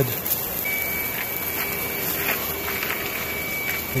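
A small motor or fan whirring steadily, with a thin high whine that sets in about half a second in and holds, and a few faint clicks.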